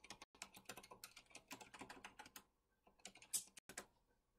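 Faint typing on a computer keyboard: a quick run of keystrokes, a short pause, then a few more keystrokes, the loudest near the end.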